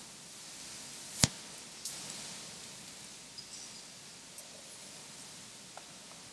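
Quiet room tone with a single sharp click about a second in, the loudest sound, followed by a weaker click and a few faint ticks.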